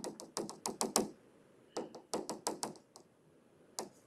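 Plastic stylus tip tapping on a tablet screen while drawing short dashes: a quick run of about eight light taps in the first second, a second run of about six a second later, and a single tap near the end.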